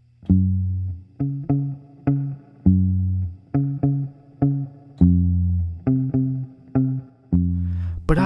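Music interlude: a plucked guitar playing single low notes, about two a second, each struck and left to ring and fade.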